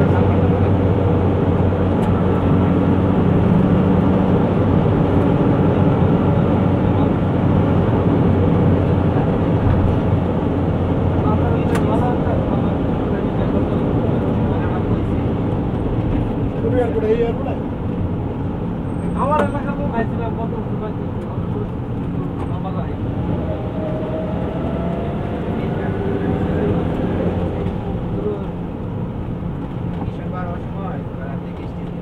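Steady engine drone and road noise heard from inside a moving vehicle's cab, easing slightly in level toward the end, with a couple of short higher sounds about two-thirds of the way through.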